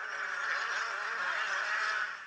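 Several two-stroke motocross bikes racing together at high revs, their engine notes overlapping in a dense, wavering buzz.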